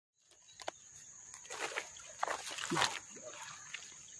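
A steady high-pitched insect drone, with a few short rushing bursts and brief low grunts in the middle.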